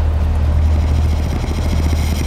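A steady low rumble with a faint hiss above it.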